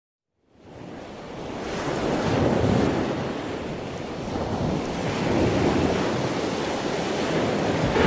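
Ocean waves washing in a steady rush that fades in about half a second in, then swells and eases.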